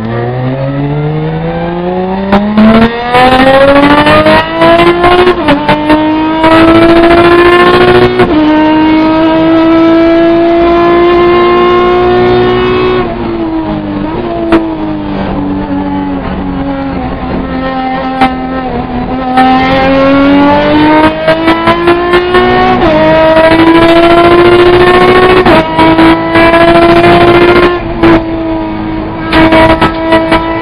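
Race car engine heard from inside the cockpit, accelerating hard and loud. Its pitch climbs through the gears and drops sharply at each upshift. About halfway through it lifts off and the pitch sinks for several seconds, then it pulls up through two more gears.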